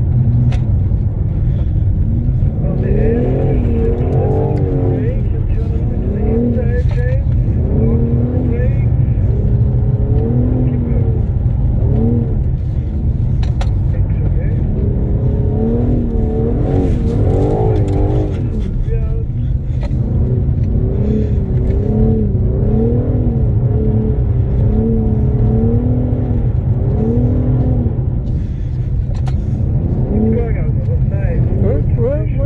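BMW M4 Competition's twin-turbo straight-six heard from inside the cabin, its revs rising and falling over and over as the throttle is worked through slides on a snow track, over a steady low rumble.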